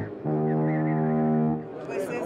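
An alien mothership's film sound effect: one long, steady low note, held for about a second and a half and stopping shortly before the end.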